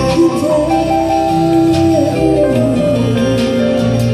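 Live acoustic pop ballad played through a PA: strummed acoustic guitar and keyboard with sustained notes.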